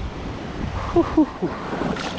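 Wind buffeting the microphone over running creek water, with a couple of short voice-like sounds about a second in. Water splashes near the end as a hooked largemouth bass is swung up out of the creek.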